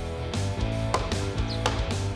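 Background music: sustained instrumental notes with a few light percussive hits.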